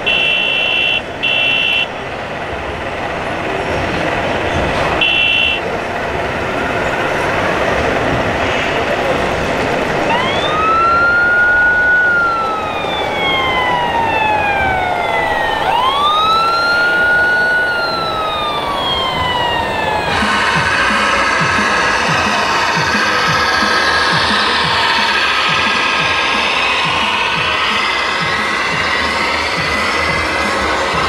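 Siren from an RC model fire truck's sound unit: two slow wails, each rising quickly and then falling away over about five seconds. A few short high beeps come in the first seconds.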